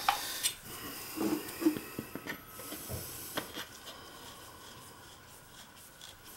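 Handling noise from a clear plastic water filter housing and a copper pipe stub being fitted into its head: rubbing with several sharp clicks and knocks in the first few seconds, then quieter.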